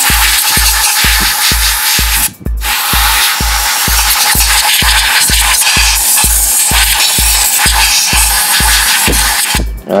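Compressed air from a can hissing in two blasts, a short one of about two seconds and then a long one of about seven seconds, blowing debris out of a car foglight housing. Background music with a steady beat runs underneath.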